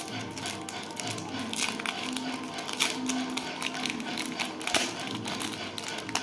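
A foil Pokémon card booster-pack wrapper being torn open and crinkled by hand: an irregular run of sharp crackles, with a faint held tone underneath in the middle.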